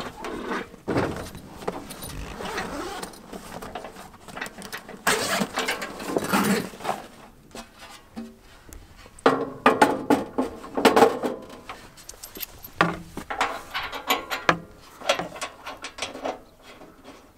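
Handling sounds from unpacking a Blackstone tabletop griddle: rustling of its padded nylon carry bag and irregular clanks and knocks of the steel griddle being lifted and set down on a metal tailgate, with a few louder knocks in the second half.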